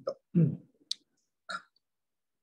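A man's voice in a few brief, wordless mouth sounds, with a single sharp click about a second in.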